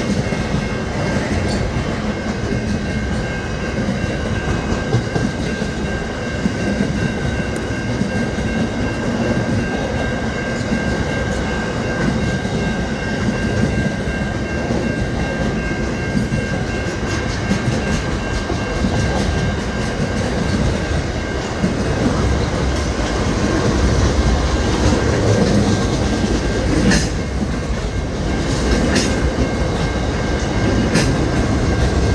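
SCT Logistics freight train's boxcars rolling steadily past, their wheels rumbling and clattering over the rails, with a steady high-pitched ring over the rumble. A few sharp clacks come near the end.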